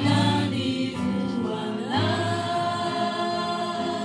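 A congregation singing a worship song together, with new sung phrases starting about one and two seconds in over steady low accompanying notes.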